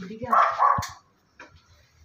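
A dog barking twice in quick succession, short sharp barks about a third of a second in.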